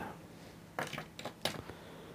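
Scissors snipping the tying thread at the head of a finished fly: a few quiet, sharp clicks close together about a second in.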